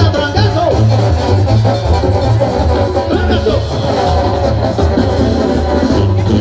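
Live Mexican banda music played loud, with a steady low bass beat.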